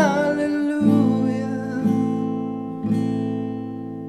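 Acoustic guitar strumming an E minor chord in slow single strums about a second apart, each left to ring out and fade. A sung note ends in the first second.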